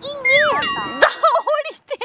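A bright metallic ding rings out about half a second in and holds for over a second, with a sharp click about a second in.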